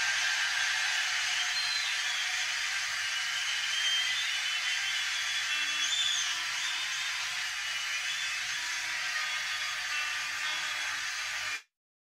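A large theatre audience applauding after the music ends, with a few whistles rising above the clapping. The sound cuts off suddenly near the end.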